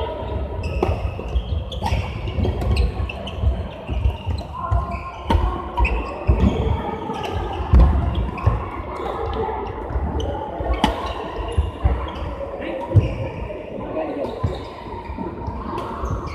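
Badminton play in a large indoor hall: sharp racket hits on the shuttlecock and thuds of players' feet on the court, scattered irregularly, over a steady background of voices from other courts.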